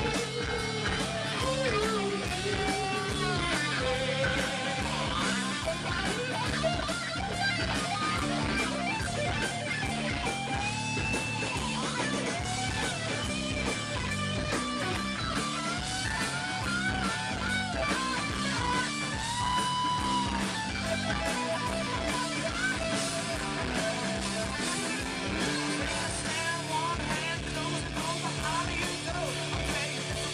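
Live rock band playing an instrumental passage: a lead electric guitar plays bent, wavering notes over a steady drum beat and bass.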